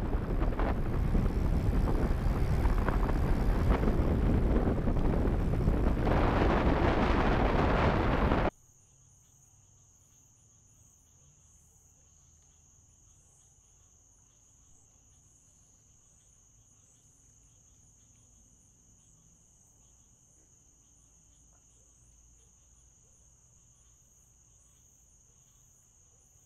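Loud, steady wind and road rush from riding a recumbent e-bike at speed, which cuts off abruptly about eight seconds in. After that comes a faint, steady, high-pitched cricket trill.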